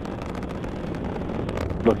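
Steady, even noise of the Atlas V rocket's RD-180 first-stage engine during ascent, with a man's voice starting near the end.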